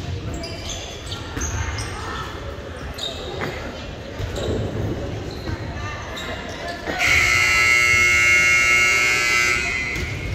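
Gym scoreboard buzzer sounding one long, steady blast of about three seconds near the end. Before it, volleyballs bounce and are hit on the hardwood court among players' voices, echoing in the large gym.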